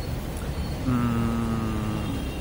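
Steady low rumble of city traffic. About a second in, a single held pitched tone, slightly falling, sounds for about a second.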